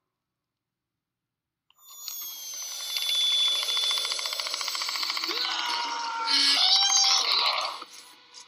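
Movie sound effects: after about two seconds of dead silence, a loud, rapid rattling and grinding din rises, laced with high whines and sliding tones, with a rising screech near the end before it cuts off shortly before the end.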